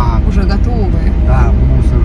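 Steady low rumble of a car's engine and tyres heard from inside the moving cabin, under voices talking.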